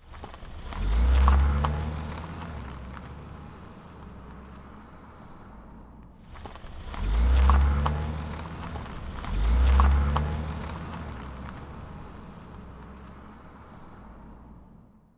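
Car engine sound effects laid over toy cars in stop-motion: three loud revving swells, about one, seven and ten seconds in, each building up and then fading away.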